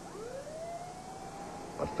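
Ambulance siren winding up: one tone rises steeply in pitch over about a second and a half, then holds steady.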